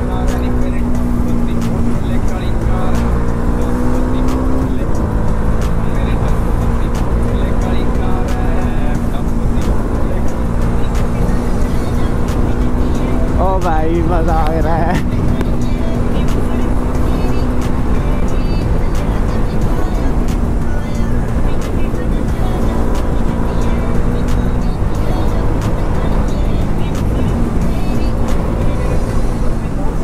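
Motorcycle riding at a steady cruise: an engine hum with wind rushing over the microphone. Background music plays over it, with a wavering singing voice in the middle.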